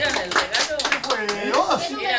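A group of people clapping in applause, the claps thinning out after about a second, over several voices talking at once.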